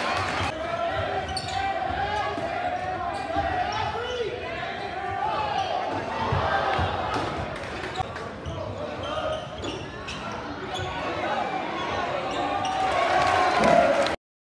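Basketball game in a gym: a ball bouncing on the hardwood court amid the chatter of a crowd of spectators. The crowd noise grows louder near the end as a shot goes up.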